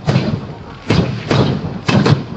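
Aerial firework shells bursting: four sharp bangs in quick, uneven succession, each trailing off.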